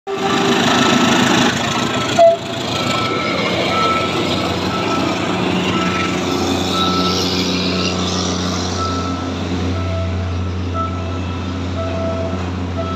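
A diesel locomotive hauling passenger coaches slowly past: a steady engine drone with the rumble of the cars rolling over the rails. One short, loud burst comes a little over two seconds in.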